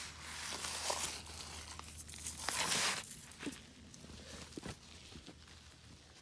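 Faint crunching and rustling, with scattered clicks and a louder rustle about two and a half seconds in.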